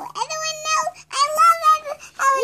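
Young girls' high-pitched sing-song voices: two short held notes, with a brief break about a second in.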